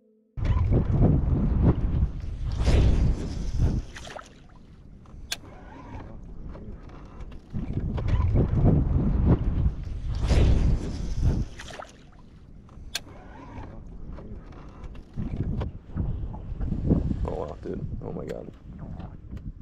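Wind buffeting the camera microphone on open water, coming in three long surges of rumble with quieter stretches between, and a few sharp clicks.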